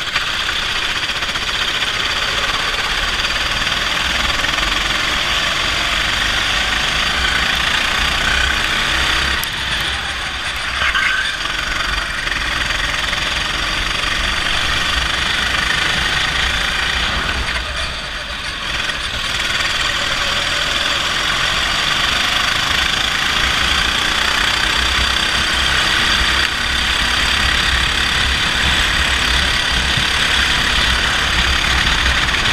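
A 270 cc four-stroke rental kart engine running hard at race speed, heard from on board the kart. The sound is loud and continuous and drops briefly twice, about ten and eighteen seconds in.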